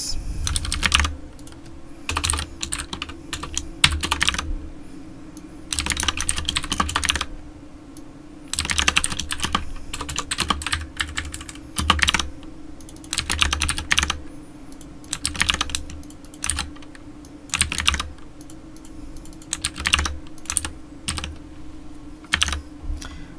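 Computer keyboard typing in short bursts of rapid keystrokes with pauses between them, over a faint steady low hum.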